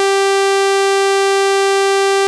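VirSyn AddStation additive synthesizer sounding one held note, loud and rich in overtones. The pitch and tone stay steady while its loop steps through four similar additive blocks.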